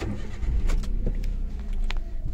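Car engine running, heard from inside the cabin as a steady low rumble, with a few light clicks.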